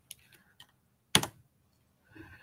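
A single sharp computer-keyboard key press about a second in, with a few faint ticks before it. It is the key press that advances the presentation slide.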